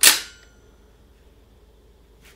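A single sharp metallic clang from a rifle bipod, ringing briefly and dying away within about half a second.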